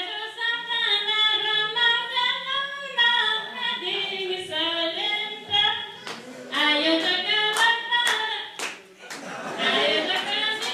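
A woman sings a Nepali folk song unaccompanied through a microphone, her voice bending and holding long notes. Rhythmic hand claps join in about six seconds in, roughly two a second.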